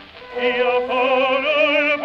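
Historic recording of an operatic baritone singing with vibrato. After a short pause at the start, the voice comes back in on a low note about half a second in and steps up to a higher one near the end.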